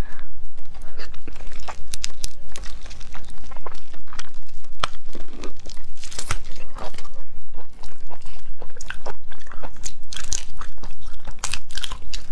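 Close-miked crunching and cracking of a large whole prawn's shell as it is bitten and chewed, with the shell crackling as it is pulled apart by hand near the end. The shell is tough and unmarinated, hard to peel and chew.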